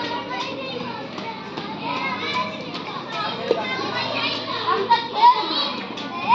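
A group of schoolchildren's voices, many calling out and talking at once, with a few louder shouts about five seconds in.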